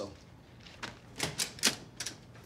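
A few short, sharp taps, irregularly spaced, in the second half.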